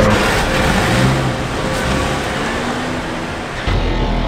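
A car's rushing engine and road noise over background music, giving way to the music alone near the end.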